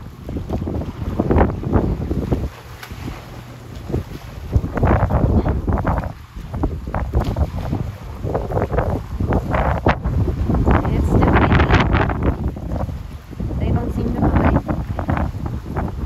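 Wind buffeting the microphone in uneven gusts, over pool water splashing and churning as swimmers move about.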